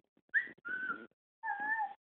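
Whistled notes traded between a father and his 15-month-old toddler: a short rising note and a held note in the first second, then after a gap a second held note, its overtones more like a high voiced 'ooh' than a pure whistle, as the toddler copies his father.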